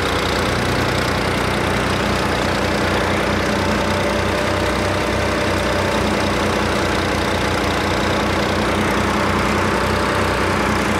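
Tractor-driven Jai Gurudev paddy thresher running as bundles of wet paddy are fed into it: a loud, steady mechanical din over the tractor's diesel engine chugging evenly underneath.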